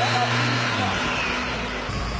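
A car engine running with a steady low hum that weakens about halfway through, over a background noise haze.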